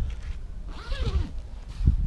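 Canvas vent flap on a 1988 Combi Camp tent trailer being lifted open, the fabric rubbing and rasping against itself and the frame.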